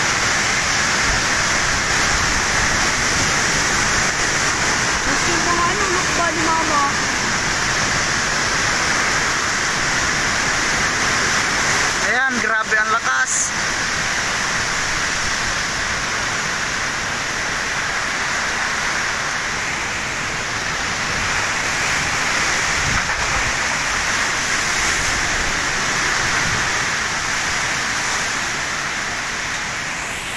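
Typhoon wind and heavy rain: a loud, steady rush of wind-driven rain that holds constant throughout. A voice briefly breaks through near the middle.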